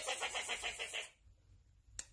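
A car engine cranking on its starter without catching, an even chugging of about nine beats a second that cuts off suddenly about a second in.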